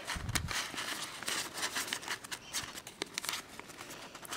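Folded origami paper rustling and crinkling in the hands as the flaps of the paper units are tucked into one another, in many small irregular crackles. A brief dull low thud right at the start.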